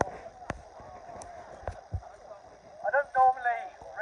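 A man's voice through a handheld megaphone, starting about three seconds in after a pause broken by a few sharp clicks.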